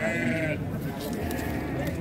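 A sheep bleats once: a short, high, wavering bleat about half a second long.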